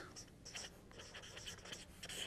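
Faint scratching of handwriting: short, irregular strokes of a pen or marker on a writing surface.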